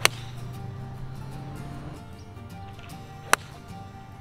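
Two crisp golf tee shots about three seconds apart, each the sharp crack of an iron clubface striking the ball, over background music.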